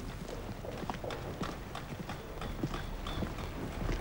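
Army boots walking on a paved road: a steady run of sharp footfalls, roughly two to three a second.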